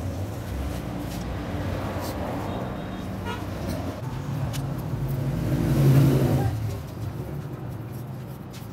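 A motor vehicle's engine passing close by, growing louder to a peak about six seconds in and then fading, over steady street traffic noise.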